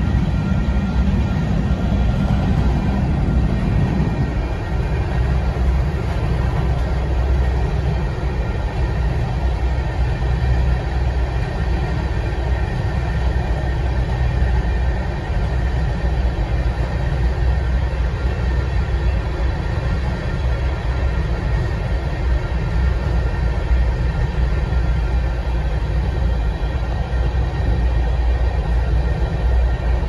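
Union Pacific freight train's covered hopper cars rolling past on the rails: a loud, steady rumble and clatter of wheels with faint steady high tones above it.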